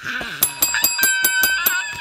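Rapid bell-like metallic ringing: a quick run of strikes, about seven a second, each with a clear ringing tone, starting about half a second in and lasting just over a second.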